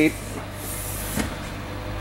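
Spring-loaded vinyl school-bus seat cushion being pushed down by hand: a brief rustle of hand on vinyl, then a single clunk about a second in as the seat moves, over a steady low hum.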